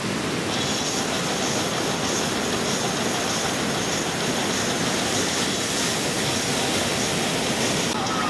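Ocean surf breaking, a steady, dense rushing noise that never lets up.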